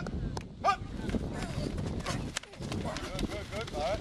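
Men's voices calling out and talking on a football practice field, with several short, sharp knocks scattered through.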